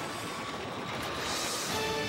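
Sports-broadcast opening theme music with a rushing whoosh effect that swells about three quarters of the way through, after which held musical notes return.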